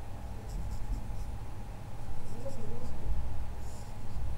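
Marker pen drawing short strokes on a white writing surface: a few faint scratchy strokes over a steady low rumble.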